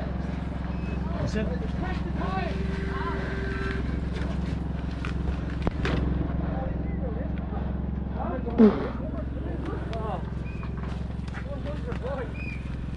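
People talking in the background over a steady low hum, with one louder voice briefly about two-thirds of the way through.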